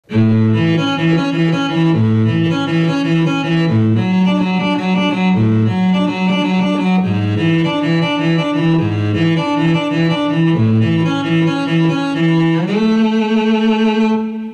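Audio Modeling's SWAM Cello, a physically modelled virtual cello, played live from a MIDI keyboard. It plays a quick melodic line of low notes, then slides upward near the end into a long held note.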